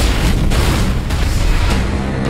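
A sudden loud blast-like sound effect at the start, running on as dense rushing noise for about two seconds, over trailer music.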